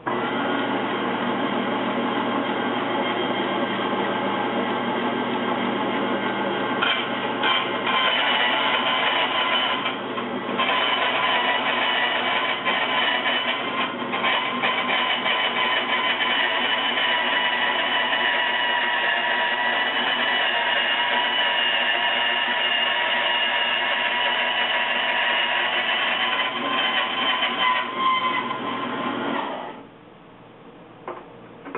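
Bandsaw running and cutting through 22-gauge sheet metal, a steady loud whine with several held tones, dipping briefly about a third of the way through and cutting off just before the end.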